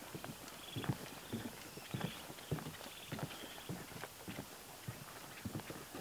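Footsteps on the planks of a wooden dock, a steady walking pace of about two steps a second.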